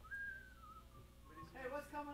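A single whistled note, a thin pure tone that slides slowly downward with a slight waver for about a second and a half. A voice follows near the end.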